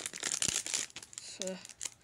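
Foil Pokémon booster pack wrapper crinkling as it is handled: a quick run of rustles for about the first second and a half.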